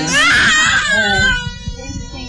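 A toddler crying out in a high wail that rises in pitch, holds, and trails off about a second and a half in.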